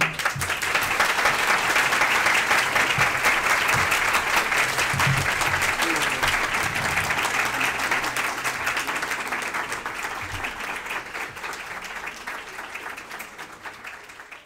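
Audience applause, starting suddenly as the talk ends, holding steady for several seconds, then gradually thinning and fading out.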